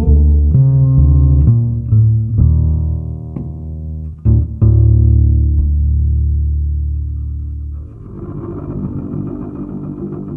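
Upright double bass played pizzicato in a slow line of long, low, ringing notes, with a couple of sharp plucks about halfway through. About eight seconds in the bass notes stop and a quieter, busier plucked-string accompaniment carries on.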